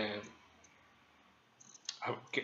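The end of a man's spoken word, a pause of about a second, then a few short clicks near the end, just before he speaks again.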